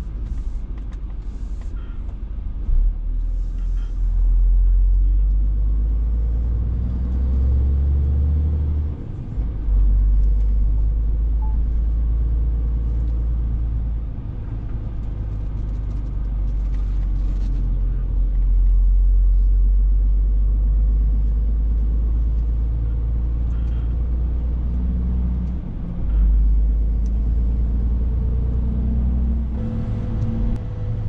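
Heavy truck's diesel engine heard from inside the cab, a deep, loud, steady rumble. Its note breaks and shifts twice, about nine seconds in and again near the end.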